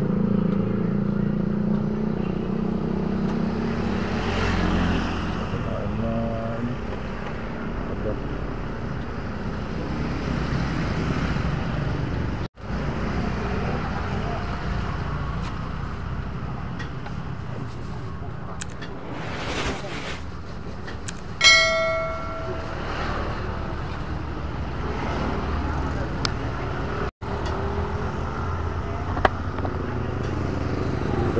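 Street traffic and motorbike engines running steadily, with voices in the background. About two-thirds of the way through comes one sharp ringing tone that dies away over about a second.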